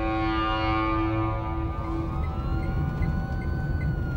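A held music chord fades out over the first two seconds above a low steady rumble of traffic. About two seconds in, a siren starts, slowly rising in pitch and holding high near the end.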